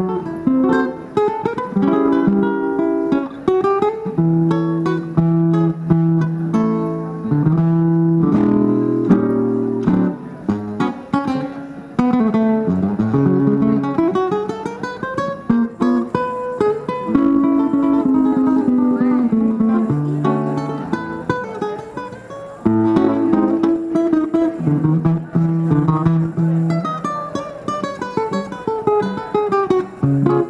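Solo acoustic guitar played by a street guitarist: a plucked melody over bass notes and chords, going quieter for a stretch about halfway through.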